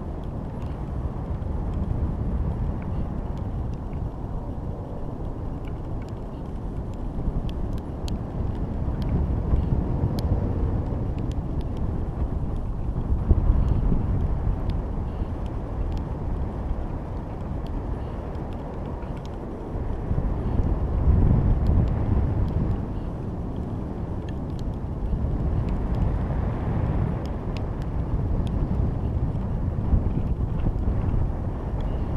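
Wind buffeting a GoPro camera's microphone inside its housing as it rises under a high-altitude balloon: a muffled low rumble that swells and fades in gusts, with a few faint ticks.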